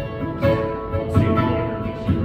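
Acoustic guitar strummed live, its chords ringing on between fresh strokes about half a second and a second and a quarter in.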